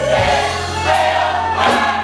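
Live gospel music: a woman's solo voice with a choir singing behind her, over band backing with a steady low bass line and a few drum hits.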